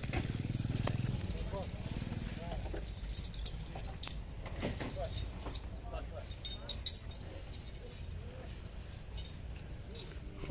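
A small motorcycle engine running close by, its low hum fading after about a second. Then scattered sharp clinks and knocks under faint background voices.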